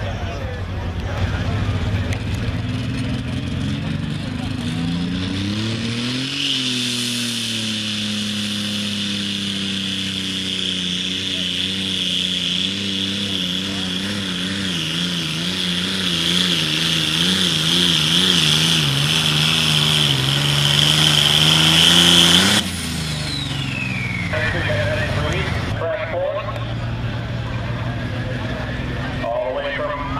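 Turbocharged diesel engine of a John Deere Light Super Stock pulling tractor revving up over the first six seconds, then running at full throttle under the sled's load with a steady high turbo whine and a wavering engine pitch, growing louder. It cuts off suddenly about three-quarters of the way through as the pull ends.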